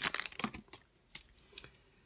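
Light clicks and rustles of trading cards being handled, dying away after about half a second, with a couple of faint ticks later.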